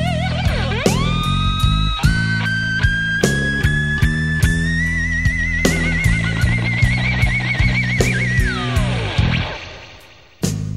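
Electric slide guitar solo in a blues-rock band recording, over bass and a steady drum beat. The lead line glides between pitches and holds a long high note with wavering vibrato, then slides down. The band drops away briefly near the end.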